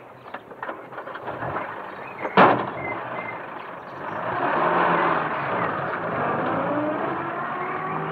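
A Land Rover's door slams shut once, then from about halfway through its engine runs and revs as the vehicle drives off, the pitch sliding down near the end.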